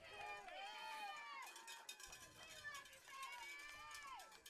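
Faint, distant shouting voices from the stadium. About a second and a half in, a rapid patter of clicks joins them.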